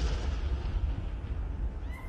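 Hiss of a stage smoke jet dying away over a deep rumble, as the smoke clears for the genie's entrance.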